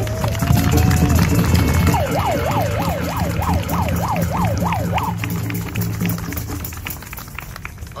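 A siren in the street: a slowly rising wail in the first second, then quick up-and-down sweeps about three times a second for some three seconds, over a steady low drone.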